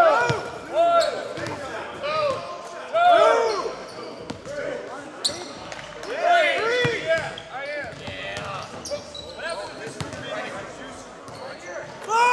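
Basketball shoes squeaking on a hardwood gym floor in many short, rising-and-falling chirps, with basketballs bouncing in a large echoing hall.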